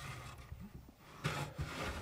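A wooden post rubbing and scraping as it slides inside a square steel tube, the leg of a stand, louder from a little past a second in.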